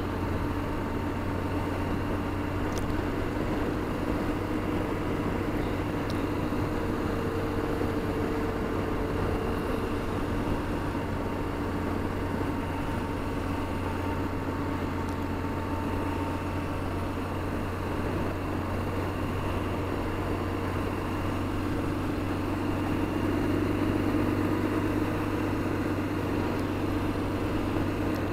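BMW R1200GSA's boxer-twin engine running steadily at cruising speed, under an even rush of wind and road noise, swelling slightly near the end.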